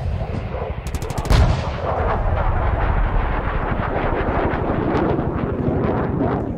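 Rapid, continuous machine-gun-like gunfire, with a heavier blast about a second and a half in.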